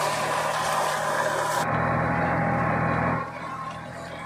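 A compact tractor's engine runs steadily while it pulls a turmeric digger through the soil. A loud rushing noise lies over it and drops away about three seconds in.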